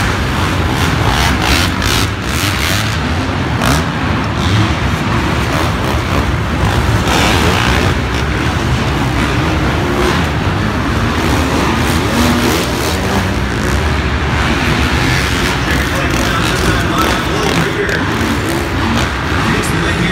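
Several 450-class four-stroke motocross bikes racing around an indoor arenacross dirt track, their engines running continuously. A public-address voice runs underneath.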